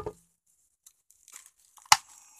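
Paper packaging being torn: the tail of a rip right at the start, a few faint crinkles, then one short, sharp rip near the end.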